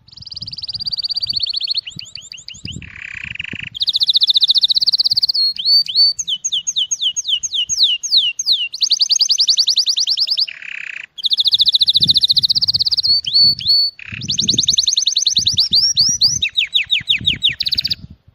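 Male canary singing an excited courtship song: long, fast trills and runs of rapidly repeated high notes, some slower runs of downward-sweeping notes, broken by brief pauses.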